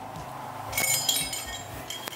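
A bundle of metal medals on ribbons clinking together as they are picked up, a brief metallic jingle near the middle.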